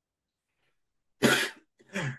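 A person coughing: one sharp cough about a second in, then a second, weaker cough near the end.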